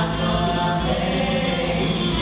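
Musical theatre cast singing together as an ensemble over the live band, a held sustained chorus. Recorded from the audience, so it sounds distant and reverberant.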